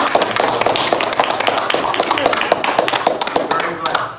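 A small group applauding with dense, uneven handclaps, with voices talking among the clapping.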